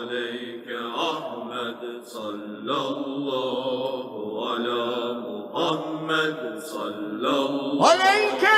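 Unaccompanied voice chanting an Islamic devotional hymn of blessings on the Prophet Muhammad (salawat), in long melismatic phrases whose pitch slides and wavers. Near the end, a louder, higher voice comes in with a rising swoop.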